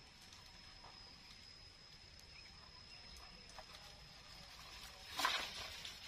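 Quiet outdoor ambience with a faint, steady high-pitched tone and a few small ticks. About five seconds in, a brief rustle as a long pole works among the fronds of a coconut palm.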